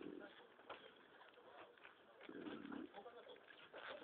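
Newborn puppies nursing: faint suckling clicks and smacks, with one low wavering whimper or grunt about two and a half seconds in.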